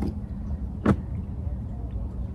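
Handling noise as a towel is spread over a plastic cooler lid and the compass is held over it: one sharp knock about a second in, over a steady low rumble.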